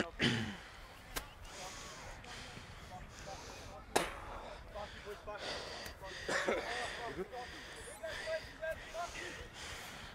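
Faint, distant voices of players calling across a sports field, growing busier in the second half, with three sharp knocks in the first four seconds.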